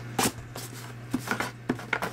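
A few light clicks and taps of handling noise as a handheld camera is moved, over a steady low hum.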